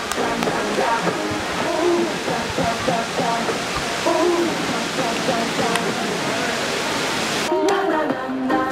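Steady rush of splashing water from a large tiered public fountain, with the voices of people around it. It cuts off suddenly near the end, giving way to pop music with singing.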